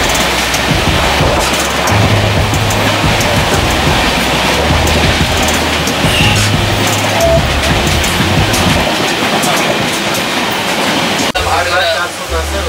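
Steady rushing running noise of a moving passenger train heard from inside the coach through an open window, with light rail clicks. A low bass line of music stepping between two notes runs underneath. A sharp click comes near the end.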